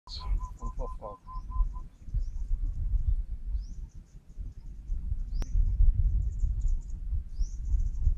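Small birds chirping again and again in short rising calls over a fluctuating low rumble, with a row of quick evenly spaced pips in the first two seconds and one sharp click about five and a half seconds in.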